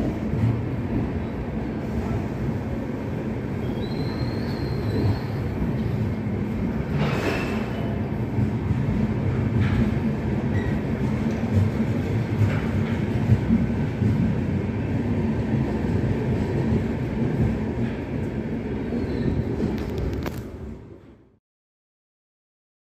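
Passenger train rolling alongside a station platform: a steady low rumble with a few brief clanks, fading out shortly before the end.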